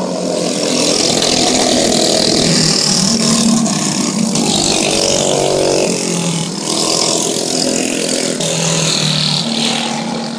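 Several racing go-kart engines running hard, their pitch rising and falling as the karts accelerate and slow through the corners. The engines are loudest through the first half, then ease off a little.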